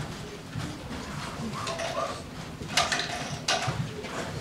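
Murmur of students talking and moving about a lecture hall, with two sharp knocks near the end.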